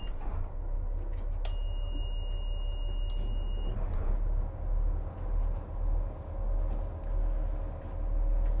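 Twin Caterpillar 3126 inline-six diesel engines idling just after starting, a steady low rumble that swells and eases about once a second in the second half. About a second and a half in, a steady high beep sounds for about two seconds and stops.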